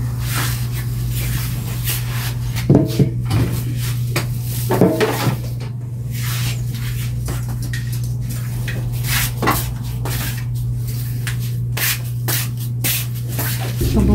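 Kitchenware being handled: scattered knocks and clatter from an air fryer basket and a plastic container, over a steady low hum.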